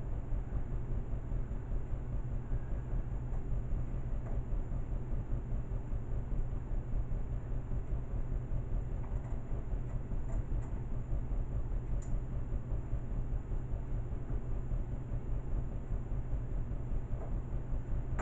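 Steady low background rumble with a faint hiss, broken by a few faint ticks.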